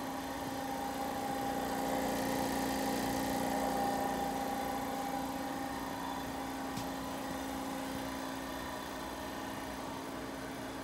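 Steady machine hum with a few unchanging tones, swelling a little between about two and four seconds in.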